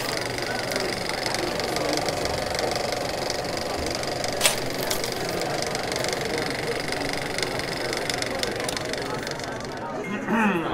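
Steady hiss and crackle of an old film soundtrack, with scattered clicks and one sharp click about four and a half seconds in.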